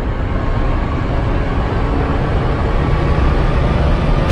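Logo intro sound effect: a steady, deep rushing noise that grows slightly louder.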